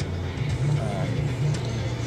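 Steady low drone of a car's engine and road noise heard inside the cabin while driving, with music playing underneath.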